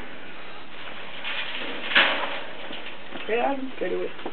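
A single sharp knock about two seconds in over a steady hiss, then a brief voice near the end.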